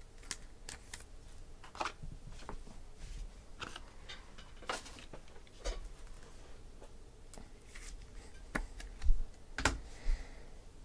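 Scattered light clicks and taps of trading cards being handled and set down on a tabletop, with two louder knocks near the end.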